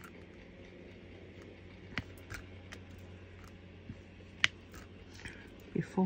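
Diamond painting drill pen tapping as square drills are picked up from a plastic tray and pressed onto the canvas: a few sparse faint clicks, the sharpest about two seconds in and about four and a half seconds in, over a low steady hum.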